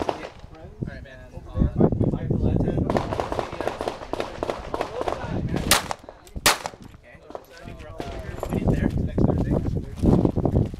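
Several pistol shots fired one at a time at an uneven pace, the two loudest coming close together a little past the middle.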